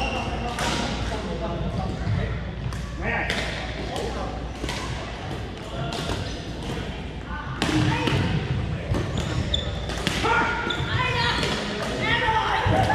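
Badminton play in a large echoing gym hall: a string of sharp racket strikes on the shuttlecock and other thuds at uneven intervals, with voices talking in the background.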